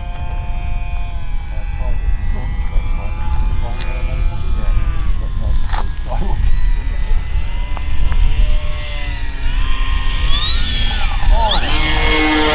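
Whine of radio-controlled model planes' electric motors and propellers, several tones sliding up and down in pitch as the planes fly about, with one climbing steeply near the end. Wind rumbles on the microphone underneath.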